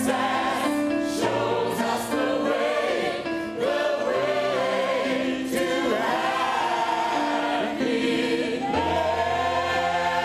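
A choir singing a song in a stage show, several voices over steady held low notes.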